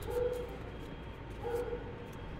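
Tarot cards being drawn from the deck and laid down on a cloth, soft faint handling sounds. A short faint tone is heard twice, about a second and a half apart.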